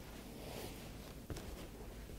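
Faint rustle of a rolled cloth towel being pulled out from under a knee and lifted, with one small click about a second and a half in.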